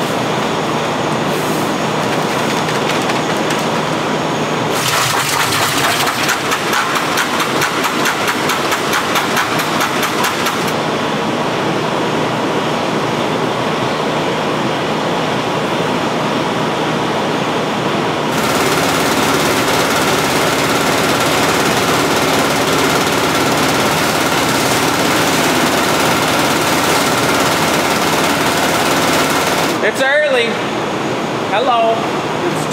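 Spray Fill Xpress chemical mixing station running loudly and steadily as it fills. A fast, even clatter comes in about five seconds in and stops about six seconds later. From about two-thirds of the way through, the running turns smoother, with a steady whine over it.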